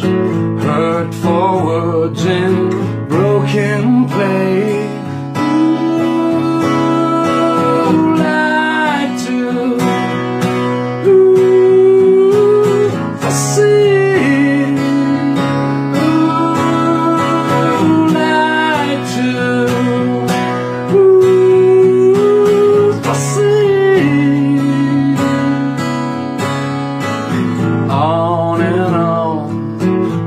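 A man singing solo to his own strummed acoustic guitar, holding long sung notes over steady strumming.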